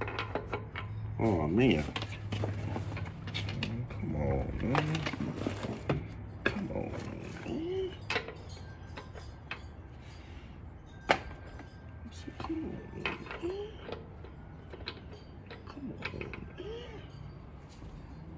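Scattered metal clinks and taps of a hand tool and lug nuts being handled at a car wheel, with one sharper clink about eleven seconds in.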